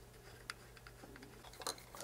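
A few faint ticks and clicks of a small screwdriver turning tiny screws out of the end panel of a small SDR receiver, over a faint steady hum.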